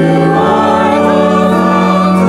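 A group of voices singing a hymn or anthem in long held chords, with the harmony moving to a new chord about half a second in.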